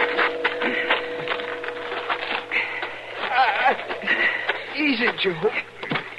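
A held brass music chord fades out over the first few seconds under a fast, continuous run of short knocks. A man groans in pain twice, a falling moan each time: a wounded man.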